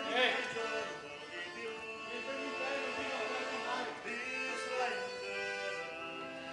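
Venetian gondola serenade: a singer in an operatic style with instrumental accompaniment, holding long wavering notes.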